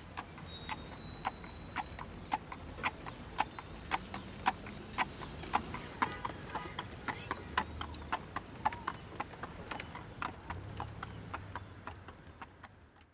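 A shod horse's hooves clip-clopping at a steady walk on hard pavement, with faint street noise behind. The hoofbeats grow fainter near the end.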